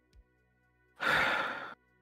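Faint held music tones, then about a second in a short breathy, sigh-like rush of noise that fades over most of a second, just before the song's vocals begin.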